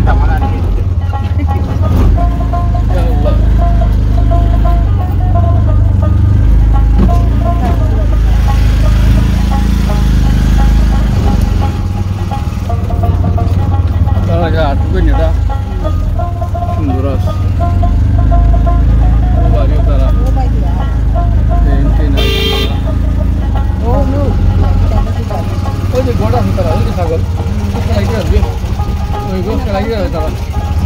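Riding in a rickshaw: a steady low rumble of the ride, with voices in the background and one short horn toot about two-thirds of the way through.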